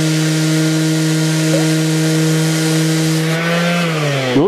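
Haiko HOS18N cordless random orbital sander running at a steady pitch while sanding a wooden board, with the motor's hum and the hiss of the sandpaper. Near the end its pitch rises a little as the sander is lifted off the board.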